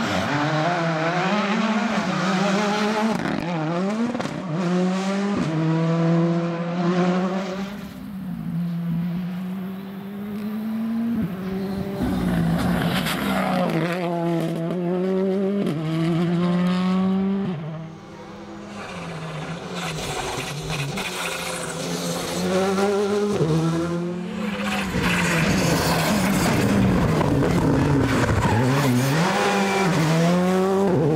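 Rally cars driving past at speed one after another, their engines revving hard and dropping back with each gear change. There are brief quieter gaps between cars.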